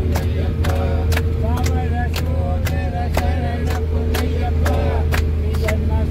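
Steady engine and road drone inside a moving minibus, with several voices chanting in a wavering tune over a sharp, steady beat of about two to three strikes a second.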